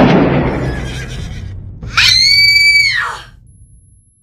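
The echo of a gunshot dying away, then about two seconds in a woman's high-pitched scream lasting about a second, rising at the start and falling away at the end.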